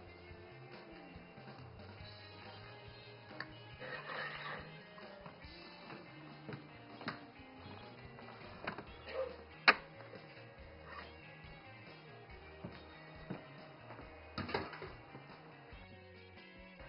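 Soft background music with guitar, over which a few scattered clinks and short scrapes of kitchen utensils on bowls are heard. The sharpest clink comes about ten seconds in, and there is a longer scrape near the end.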